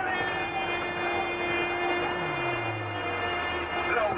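A sustained electronic drone of several steady tones, with a low tone sliding down about halfway through. It is a sound effect in a dramatic radio promo, heard over a car radio.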